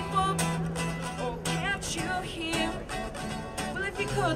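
A young male singer singing an original song live, accompanied by strummed acoustic guitar.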